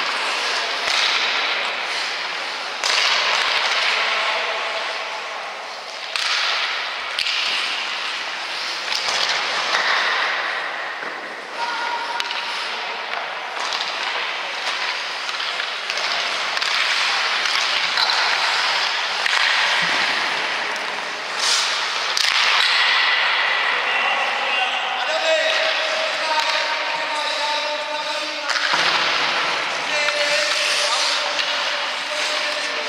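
Ice rink ambience: indistinct voices echoing around the arena, with a steady scraping hiss of skates on ice and a few sharp knocks, loudest about two-thirds of the way through.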